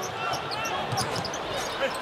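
Basketball game sound on a hardwood court: the ball being dribbled, with short high sneaker squeaks over a low arena crowd murmur.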